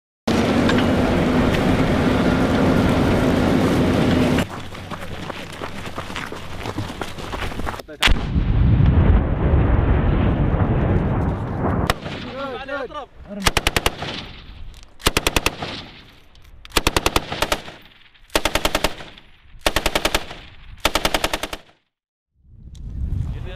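Machine-gun fire. First comes a sustained stretch of firing from a vehicle-mounted M2 .50-calibre heavy machine gun, lasting about four seconds. Later there is a series of about six short bursts of several rapid rounds each, roughly a second apart, and the sound cuts off abruptly near the end.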